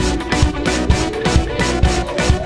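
Live rock band playing an instrumental passage: a drum kit with Sabian cymbals keeps a steady beat of about two hits a second under electric guitar and bass.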